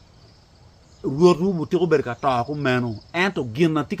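A faint, steady, high-pitched insect trill, heard on its own for about the first second, then under a man's voice as he starts talking again.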